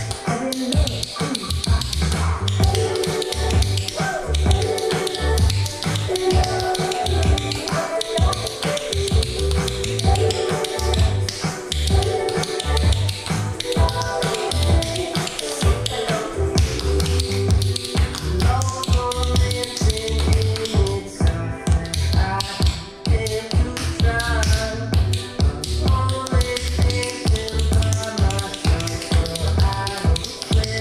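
A pop song with singing and a steady bass beat, with tap shoes striking a hard floor in rhythm along with it.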